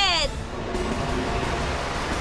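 Cartoon sound effect of a large fan blowing air: a steady rushing noise, with background music underneath.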